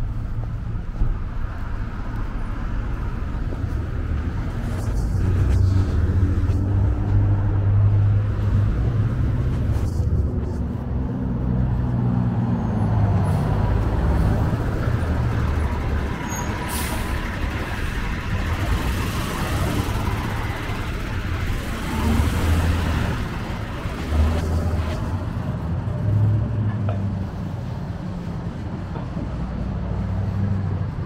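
Street traffic: car and truck engines and tyres rumbling as vehicles pass, swelling and fading. A sharp hiss a little past halfway, followed by a few seconds of higher hiss.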